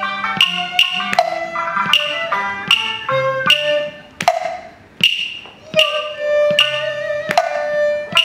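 Cantonese opera ensemble music: sharp percussion strikes with a high ringing tail, over a melody from sustained pitched instruments. The music thins out briefly about four seconds in, then picks up again.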